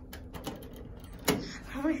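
Several light clicks, then one sharp knock a little past the middle.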